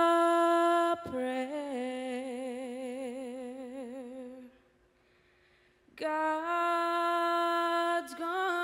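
A woman singing a slow lullaby solo, with no accompaniment. A long held note gives way about a second in to a lower note with wide vibrato. After a pause of over a second, another long held note comes in near the end.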